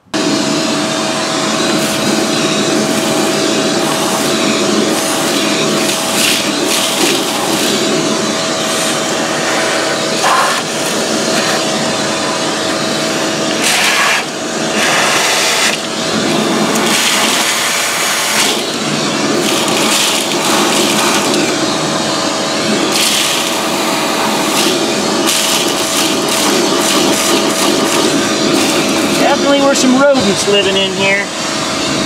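Shop vacuum switching on suddenly and running steadily, with a steady motor whine. Its hose is sucking dry grass and nest debris from a rodent nest out of the engine bay, with occasional short crackles as debris goes up the hose.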